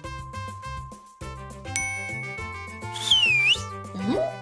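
Playful cartoon background music with a steady bass line, over which a bell-like ding rings out a little under two seconds in and holds. Near the end a loud whistle swoops down and back up, a comic cartoon sound effect.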